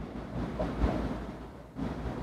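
Dry-erase marker writing on a whiteboard: scratchy rubbing strokes that stop briefly near the end, then start again.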